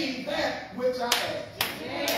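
A man's voice preaching in a church, with two sharp hand claps about half a second apart in the second half.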